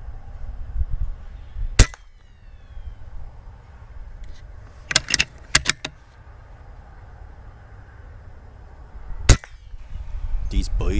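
Two shots from a .25-calibre Umarex Gauntlet PCP air rifle, each a sharp crack, the first about two seconds in and the second near the end. A quick run of four or five clicks comes about five seconds in, over a low steady outdoor rumble.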